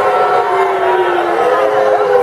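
A wrestling crowd yelling, many voices held long and overlapping at different pitches, slowly rising and falling.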